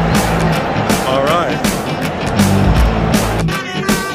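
Mariachi band music: strummed guitars with a steady beat of about three strokes a second. About three-quarters of the way through it gives way to violins and trumpet playing sustained notes with vibrato.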